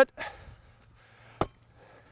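A football struck once with a single sharp thud, about one and a half seconds in.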